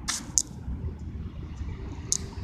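Low rumble of road traffic in an urban outdoor setting, with two short hissing sounds less than half a second in.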